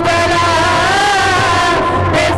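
A man's voice chanting a prayer in long, wavering held notes.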